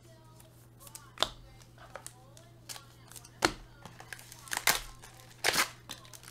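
Trading cards being handled and sorted by hand, with scattered sharp clicks and taps, the loudest about a second in and several more in the second half.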